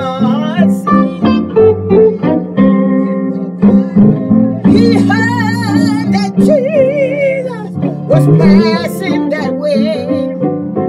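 A woman singing a gospel song in a full, wavering voice over instrumental accompaniment.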